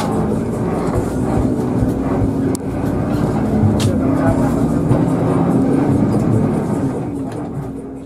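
Interior sound of a Hino RK8 bus under way: the rear-mounted six-cylinder diesel engine runs steadily under the cabin with road rumble, fading near the end.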